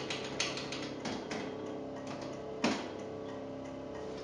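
Oven's control knob being turned by hand, its mechanism clicking in quick succession for the first second or so, then a few scattered clicks and one louder click a little before three seconds in, over a steady hum.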